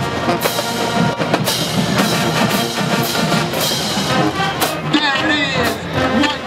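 Marching band playing, the drumline's snare and bass drums to the fore over the brass, on a steady beat of about two strokes a second.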